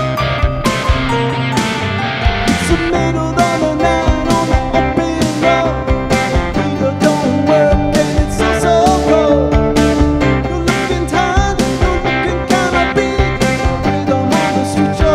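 Live rock band playing: electric guitar, bass guitar and keyboard over a steady drum beat.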